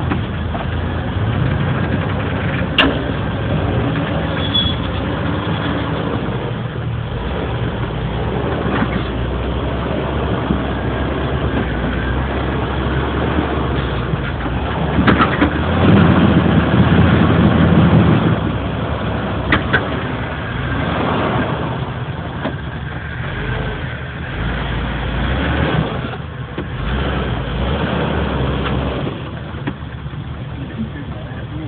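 Off-road 4x4's engine running slowly under load as it crawls over boulders, swelling louder for a couple of seconds about halfway through. A few sharp knocks stand out over it, one early and two near the louder stretch.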